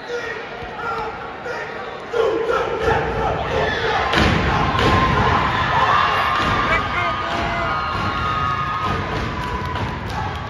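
Step team stepping: rhythmic stomps of many feet on a stage floor, louder and denser from about two seconds in, with voices shouting and cheering over it.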